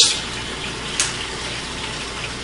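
Venison chop frying in goose grease in a covered skillet: a steady sizzle, with one sharp tick about a second in.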